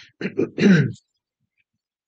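A man clearing his throat: three short pushes within about the first second.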